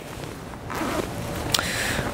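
Zipper on a disc golf bag's side pocket being pulled open: a rasping run starting under a second in, with a single click about halfway through.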